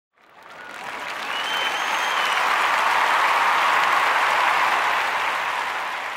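Audience applause that swells in over the first second, holds, then tails off near the end, with a faint whistle about a second and a half in.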